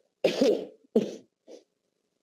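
A man clearing his throat with short coughs: two loud bursts close together and a faint third one about a second later.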